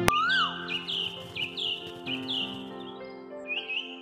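Bird chirps over soft held background music, a morning sound effect. A single rising-then-falling whistle opens it, then short chirps follow two or three a second, coming quicker near the end as the music fades.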